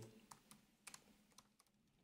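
Faint typing on a computer keyboard: a handful of separate keystrokes with short gaps between them.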